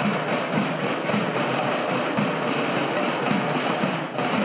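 A group of snare drums played together in a continuous roll, a dense steady sound with no separate strokes standing out.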